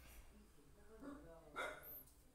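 Near silence, then a brief, quiet vocal sound from a person about a second in, peaking just past halfway.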